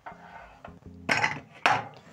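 Metal pressure cooker lid clanking twice as it is set down on the counter, about a second in and again half a second later, over faint background music.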